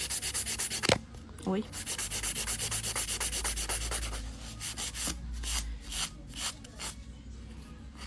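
Hand nail file rubbing back and forth across the free edge of a hardened acrygel nail extension: quick, even strokes of about six a second, turning slower and irregular in the second half. A brief knock comes about a second in.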